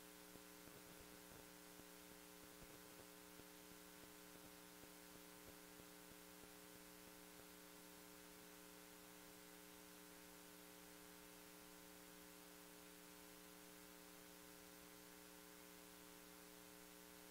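Near silence: a faint steady electrical hum on the audio feed, with a few faint ticks in the first several seconds.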